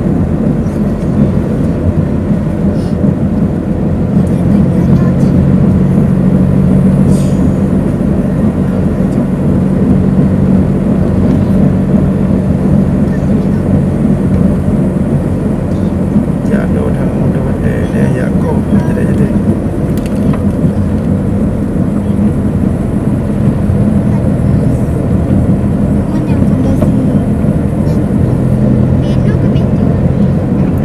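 Steady low drone of a car's engine and tyre noise on the road, heard from inside the moving car.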